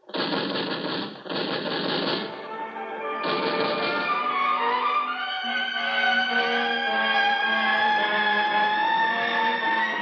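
Radio-drama sound effect of automatic rifle fire, one burst of about two seconds and a second short burst a second later. Orchestral bridge music comes in over it and swells, with a held note slowly rising toward the end.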